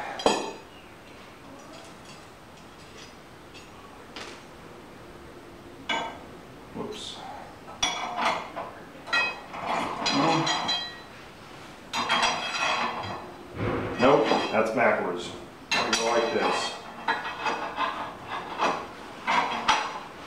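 Small steel hardware (a bolt and washers) clinking and ringing against the steel track brace as it is handled and fitted, in a series of irregular metallic clinks and taps.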